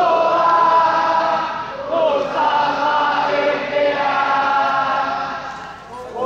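A crowd of football supporters singing their club anthem together in long, held phrases, with a brief break in the singing about two seconds in and another near the end.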